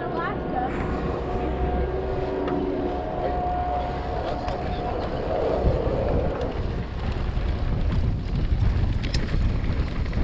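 Wind buffeting a GoPro Hero 7's microphone as a mountain bike rolls over dry dirt, with tyre noise and a few sharp knocks from the trail, the clearest near the end. A steady hum runs through the first half and fades out about halfway.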